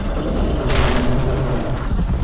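Cartoon sound effects over background music: a deep, steady rumble, with a hiss about a second long starting near the middle.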